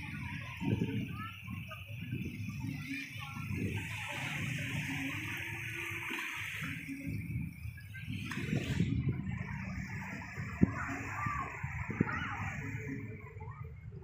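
Small sea waves washing onto a sandy beach, heard as a steady watery hiss with an uneven low rumble.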